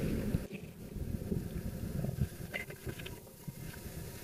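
Faint handling sounds of a Honda Air Blade scooter's fuel filler: the flip-up filler lid released and the fuel cap unscrewed and lifted off, with a few soft clicks about two and a half seconds in.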